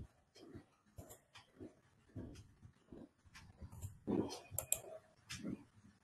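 Faint, irregular clicking of a computer mouse and keyboard, with a few duller knocks, the loudest a little after four seconds in.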